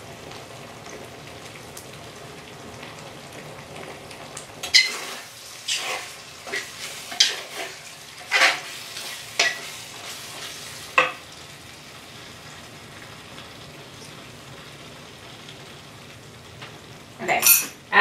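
Food simmering in a stainless steel skillet with a steady low sizzle. From about five to eleven seconds in, a spatula stirs the pan in a run of knocks and scrapes against the metal.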